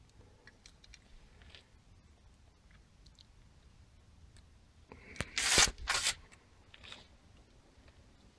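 Caulking gun squeezing out a bead of Sikaflex-291 sealant along an aluminium window frame. Mostly quiet with faint handling ticks, then two short, loud rustling scrapes a little after five seconds in and at about six seconds.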